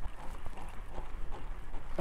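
Water lapping against the hull of a bass boat in a breeze, with small irregular knocks and a low rumble of wind.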